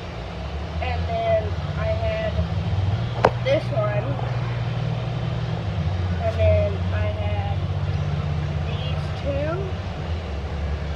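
Steady low rumble of a vehicle in motion, heard from inside the cabin, with voices talking in the background and one sharp click about three seconds in.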